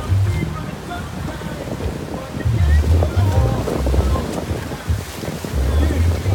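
Sea surging and breaking in white water around rocks beside a small boat, with wind buffeting the microphone in repeated low gusts.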